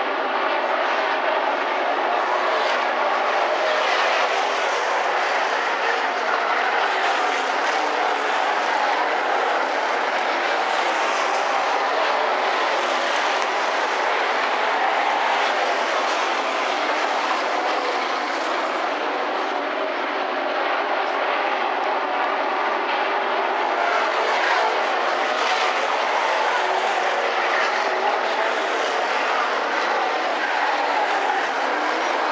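V8 engines of dirt-track modified race cars running around the oval: a steady, continuous drone of several engines blended together.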